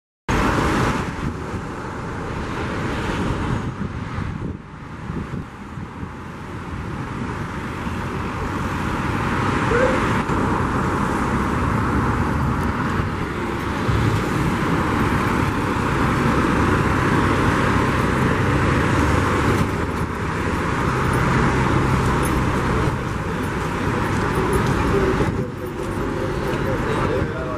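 Street traffic noise: car engines running and passing close by in a continuous wash of road noise, with a low motor hum swelling at times. It dips briefly a few seconds in.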